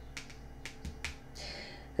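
Fingernails tapping on tarot cards lying on a cloth-covered table: about five light, sharp clicks within the first second or so.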